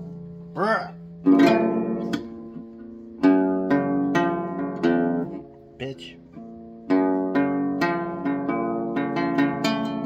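Acoustic guitar being fingerpicked: single plucked notes and short chords ring out one after another, with a couple of brief pauses between phrases.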